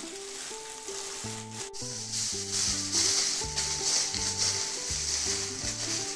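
Aluminium foil crinkling and rustling as hands fold and press it around a wrapped drumstick, loudest about halfway through. A single sharp click comes before it, under gentle background music with held notes.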